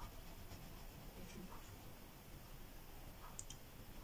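Faint marker-pen tip on paper drawing short strokes, with a few small clicks.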